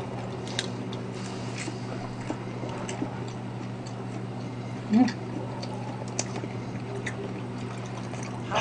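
Faint chewing and small wet mouth clicks of someone eating, over a steady low hum, with a short closed-mouth "mm" about five seconds in.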